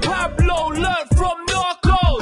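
UK rap track: a man rapping over a hip hop beat with heavy bass kicks. The beat briefly drops out twice a little past the middle.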